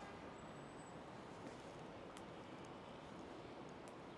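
Faint, steady hum of distant city traffic, with a couple of faint clicks.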